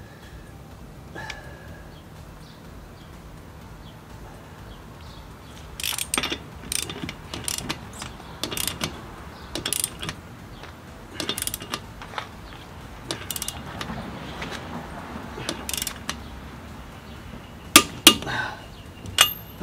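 Ratchet wrench clicking as its handle is worked back and forth on a car's lug nut. The clicks start about six seconds in and come unevenly, often in close pairs, about one to two a second.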